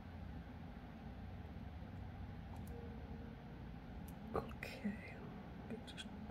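Near-quiet room with a steady low hum. Steel pliers on a small wire jump ring give a faint click about four seconds in, followed by a brief whisper.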